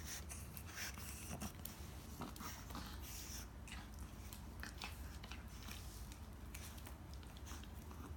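A pug and a chihuahua mouthing and tugging a rope toy together: faint, scattered short clicks and chewing sounds of the dogs' mouths working the rope.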